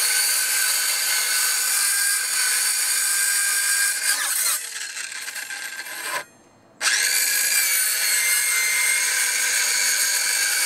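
Handheld circular saw running and cutting repeated passes across a 2x4 to notch it. About four seconds in, the motor's pitch falls and it runs quieter. The sound cuts out for about half a second, then the saw spins back up with a rising whine and cuts on steadily.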